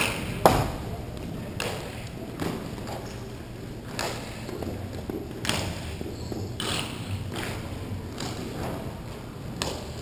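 Hockey sticks slapping plastic balls and balls striking the boards and floor: a run of sharp knocks, about nine, irregularly spaced, the loudest about half a second in, each echoing in a large hall.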